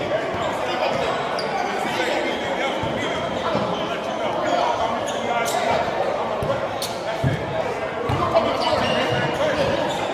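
Basketballs bouncing on a hardwood gym court in scattered thumps, over a steady hubbub of background voices from players and spectators in a large gym hall.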